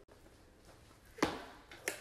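A quiet room, then a single sharp knock about a second in that fades quickly, with a fainter click near the end.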